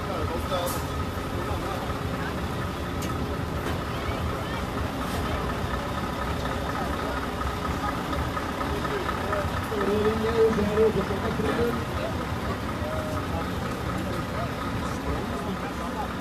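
A truck's engine idling steadily, with voices heard over it, loudest about ten to twelve seconds in.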